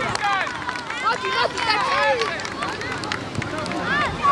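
Many short, high-pitched shouts and calls from children playing football, overlapping one another, with a few sharp knocks in between.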